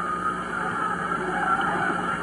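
Gymnasium crowd cheering and yelling after a made basket, heard on an old AM radio broadcast recording played back through a home stereo's speaker.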